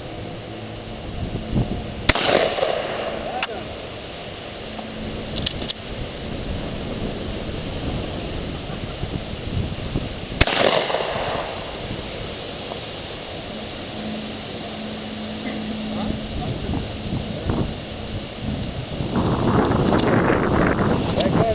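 Two gunshots, the first about two seconds in and the second about eight seconds later, each a sharp crack followed by a brief echo.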